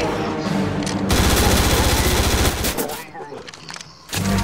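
A burst of rapid automatic gunfire starting about a second in and lasting about a second and a half, then dying away near the end.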